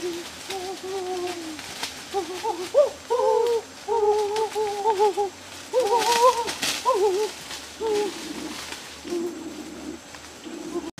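Bees buzzing in a string of drones that waver and bend in pitch as they fly close by. There is a brief rustle of undergrowth about six seconds in.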